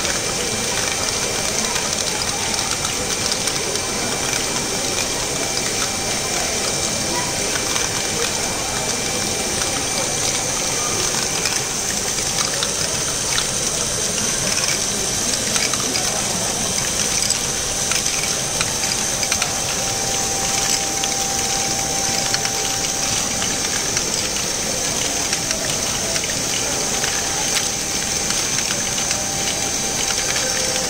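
Many LEGO Great Ball Contraption modules running at once: a dense, steady clatter of plastic Technic gears and lifting mechanisms with small plastic balls rattling through them, over a steady high whine.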